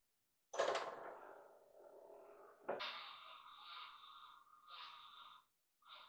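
Metal knocks as a long 4140 pre-hard steel bar is shifted and re-seated in a milling-machine vise, the bar ringing on after each knock. Two main knocks, about half a second in and near three seconds, and a shorter one near the end.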